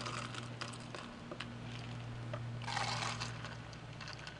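Liquid poured from a metal jigger into a stainless cocktail shaker tin, with small metal clinks and a fuller pour about three-quarters of the way in. A steady low hum runs underneath.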